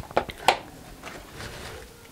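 Handling of a plastic hard tool case and its padded fabric liner as it is opened: a few light clicks and knocks, the sharpest about half a second in, then faint rustling of fabric.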